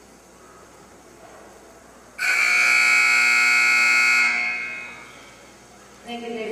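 Arena timer buzzer sounding once for about two seconds, starting abruptly about two seconds in, then dying away over the next half second or so. It is the signal that a cutting run's time is up.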